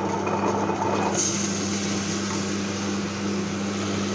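Tabletop wet grinder running steadily: its motor hums while the stone rollers turn in the steel drum, grinding soaked rice.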